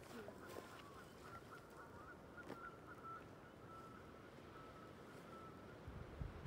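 Faint honking of distant geese, a run of short calls on a steady pitch that stops about five and a half seconds in, over a quiet background.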